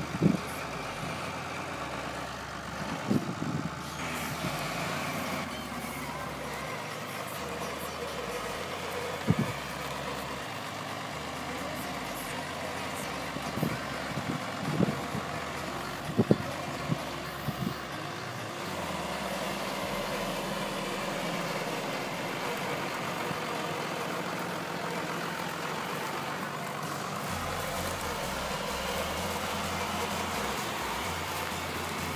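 Tractor engine running steadily while a front loader handles large square straw bales, with scattered knocks and thumps through the first part. Later the running sound turns steadier and a little louder.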